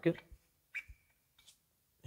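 Crankshaft sprocket being slid off the crank snout by hand: a brief metallic clink a little under a second in, then a faint click.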